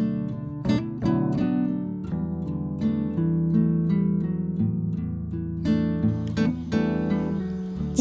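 Background music: plucked acoustic guitar playing a string of notes.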